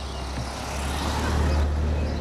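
A motor vehicle passing on the street, its noise swelling to a peak about one and a half seconds in and then fading.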